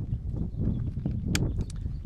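Handling noise as a spotting scope is locked into a tripod's quick-release clamp: a low, uneven rumble with one sharp click about two-thirds of the way through and a couple of faint ticks after it.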